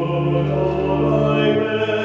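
Voices singing a slow hymn or chant in long held notes over a steady low sustained note, in a reverberant church.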